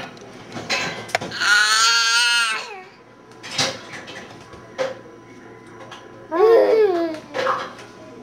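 A baby of about one year squealing: one long, high, wavering squeal about a second and a half in, then a shorter falling call near the end. A few light knocks come in between.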